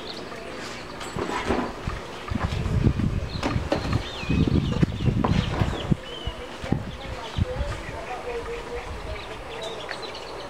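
Uneven low rumbling and thumping, loudest between about two and six seconds in, from a handheld camera being moved around, over faint background voices and a few brief high chirps.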